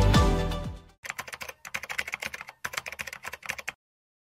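Electronic intro music with a repeated falling bass note fades out in the first second, followed by rapid computer-keyboard typing clicks in three quick runs that stop abruptly shortly before the end.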